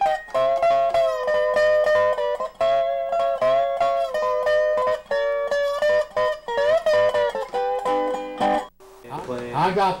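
Dobro (resonator guitar) played lap-style with a steel bar and fingerpicks: picked notes and chords ringing, with a few slides between notes. The playing stops about nine seconds in, and a man starts talking.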